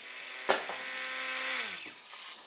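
Small electric robot motors whirring with a steady whine that slides down in pitch as they stop near the end, after a sharp click about half a second in.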